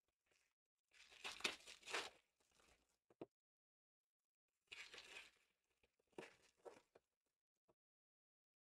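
Foil trading-card pack wrappers being torn open and crinkled: a tear of about a second starting about a second in, then two shorter tears and crinkles around the middle.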